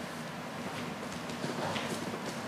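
Quiet room tone with a faint low hum and a few light knocks.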